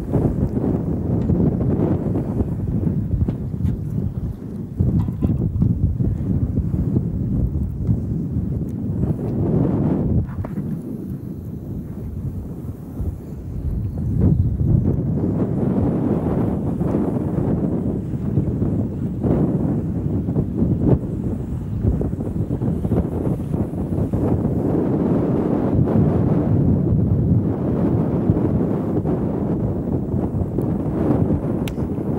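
Strong wind buffeting the microphone on an open boat deck: a low, gusting rumble that rises and falls, easing for a few seconds near the middle.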